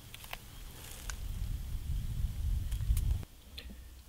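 Digging and rustling by hand in soil and dry leaf litter while working roots loose, with a few small sharp clicks and snaps over a low rumble that cuts off abruptly a little after three seconds.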